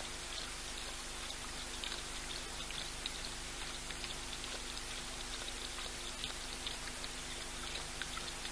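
Young male African lion lapping water: irregular small wet splashes and drips, several a second, over a steady hiss and faint electrical hum.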